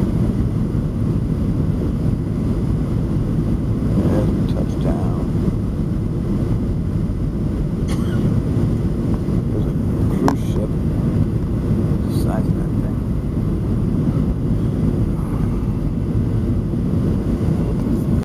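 Cabin noise of a Boeing 737 on final approach, heard from a window seat beside the wing: a steady low roar of engines and airflow with the flaps extended.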